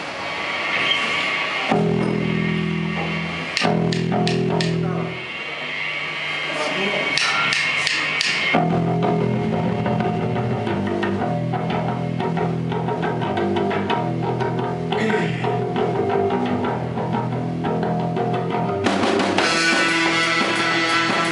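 Live rock band starting a song: electric bass and guitar sound a few held low notes with some sharp hits, then settle into a steady repeating riff about eight seconds in.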